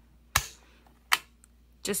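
Two sharp plastic clicks about three-quarters of a second apart, a hand pressing the push buttons on a knitting machine carriage.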